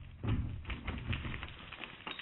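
A duct-taped concrete plate, just knocked over by a 9mm bullet, lands on a wooden pallet with a thud about a quarter second in. A scatter of light clicks and rattles follows and fades as it settles.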